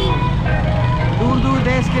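Steady low rumble of dense road traffic: motorbikes and auto-rickshaws running close by. Background music cuts off at the very start, and a voice speaks over the traffic in the second half.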